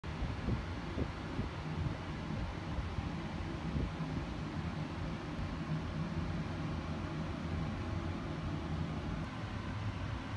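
A steady low machine hum with a noisy hiss over it, and a few faint clicks in the first two seconds.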